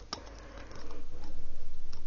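Light handling sounds of thin wire being wound around the neck of a small glass jar: a small click near the start, then a low, steady rumble in the second half.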